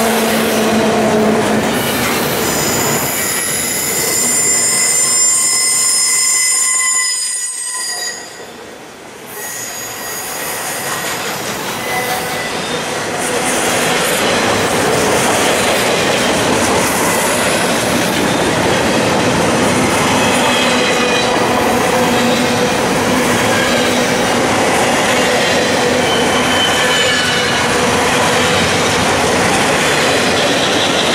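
Intermodal freight cars rolling past on steel wheels, a loud steady rumble with wheels squealing in high, steady tones at several pitches. The squeal is strongest in the first eight seconds, then a brief quieter dip, then fainter squeals return over the continuing rolling noise.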